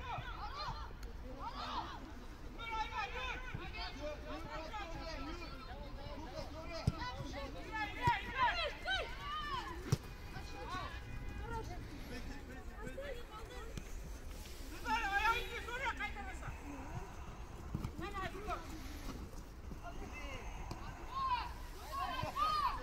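Voices shouting and calling out across a football pitch during play, several at once and at a distance, with a few sharp knocks around the middle.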